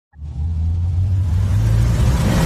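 Deep rumbling bass swell of a logo-intro sound effect, fading in quickly and then holding steady, its pitch nudging slightly upward near the end.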